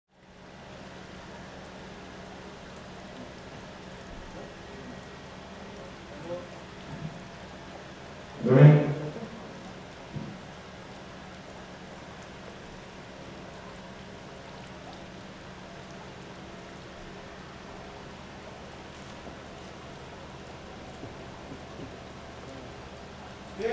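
A steady background hiss with a faint low hum. About eight and a half seconds in, a person's voice gives one brief loud call, and a few faint short sounds come just before and after it.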